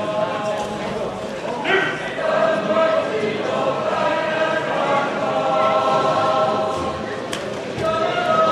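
A choir singing, several voices holding long notes together.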